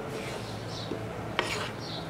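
Flat wooden spatula stirring and scraping gram flour through hot ghee in a pan, with one sharper knock about one and a half seconds in.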